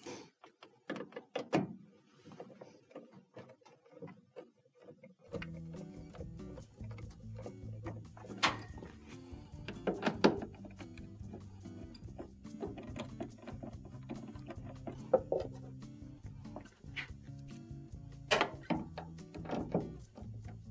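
Scattered clicks and knocks of hands working on a washing machine's plastic panels and turning screws with a Phillips screwdriver. Background music comes in about five seconds in and runs under the later knocks.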